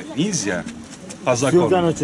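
Men's voices talking over one another in an argument, the words not clearly made out.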